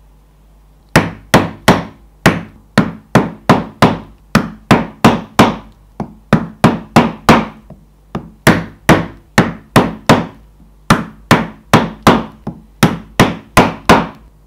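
Mallet striking a Lekoza stitching chisel, driving its prongs through leather to punch stitching holes. About thirty sharp knocks come in quick runs of several blows, about two to three a second, with brief pauses as the chisel is moved along the seam.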